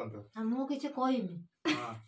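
People talking, with several short spoken phrases and a brief, harsher burst of voice near the end.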